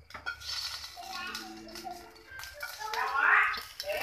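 Indistinct voices talking in a small room, loudest near the end.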